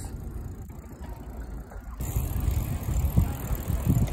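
Bicycle riding outdoors: tyre and road rumble with wind on the microphone, quieter at first, then louder and rougher with a few knocks from about halfway, as the ride moves onto a paved path.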